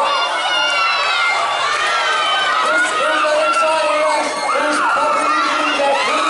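Spectators shouting and cheering on relay runners, many voices overlapping without a break, some of them high-pitched.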